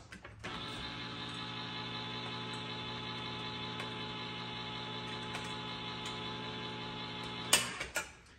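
Electric can opener motor running at a steady pitch as it cuts around the lid of a can of jellied cranberry sauce, starting about half a second in and stopping with a sharp click near the end.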